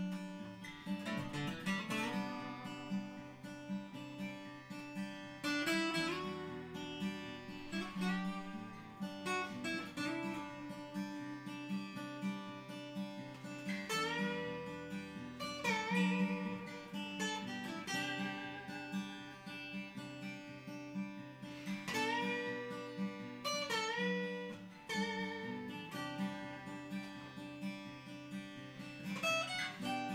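Two steel-string acoustic guitars played together unplugged, a Taylor 114ce and a Faith Venus Blood Moon: one plays chords while the other picks a melody line with string bends.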